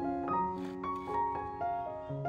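Background piano music: a slow, gentle melody of single notes over held lower notes.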